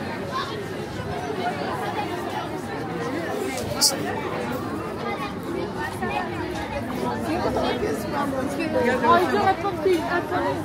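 Many passers-by talking at once: overlapping, indistinct conversation from a crowd of pedestrians. A single brief, sharp click cuts through about four seconds in.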